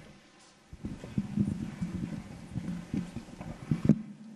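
A run of soft, irregular low knocks and bumps starting about a second in: handling noise on a live handheld microphone.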